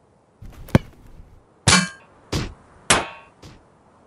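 A sharp knock about three-quarters of a second in, then four ringing clangs roughly half a second apart, the first and third the loudest.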